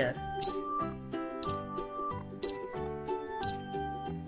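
A sharp countdown-timer tick sounding once a second, four times, over light background music with a steady beat.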